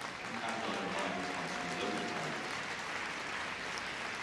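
Arena crowd applauding steadily, with a faint voice underneath.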